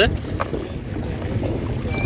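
Wind buffeting the microphone as a low, uneven rumble, with a faint knock about half a second in.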